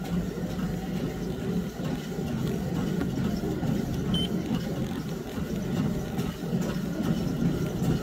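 Treadmill running steadily under a walker: a continuous low rumble of the motor and belt.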